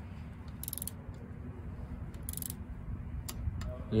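Click-type torque wrench with a 4 mm Allen bit tightening a bicycle stem set screw: two short bursts of ratchet clicking, then a sharp click near the end as the wrench breaks at its set torque of six to eight newton meters, the sign that the screw is tight enough.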